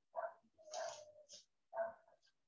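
A dog barking a few short times, faint, with the longest bark near the middle.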